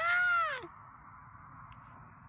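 A high-pitched, drawn-out excited vocal cry whose pitch rises and then falls, ending about two-thirds of a second in, followed by a faint steady hiss.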